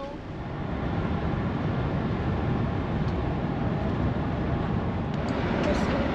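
Intercity coach heard from inside the passenger cabin: a steady low engine and road rumble that swells during the first second and then holds.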